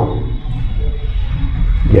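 Low, steady background rumble with a faint high whine.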